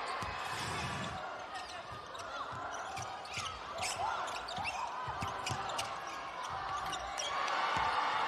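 Basketball bouncing repeatedly on a hardwood court as it is dribbled, with short sneaker squeaks from the players and crowd voices in the arena behind.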